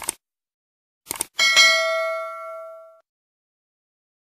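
Subscribe-button animation sound effect: a mouse click, then a quick double click about a second in, followed by a notification bell ding that rings out and fades over about a second and a half.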